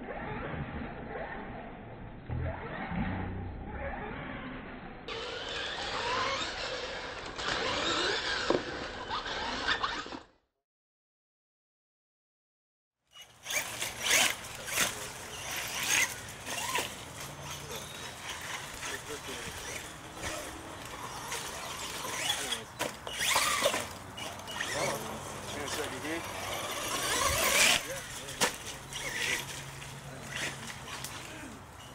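R/C monster trucks running through mud, their motors revving up and down, with voices of onlookers around them. The sound drops out completely for about three seconds about ten seconds in, then returns with splashes and knocks from the trucks.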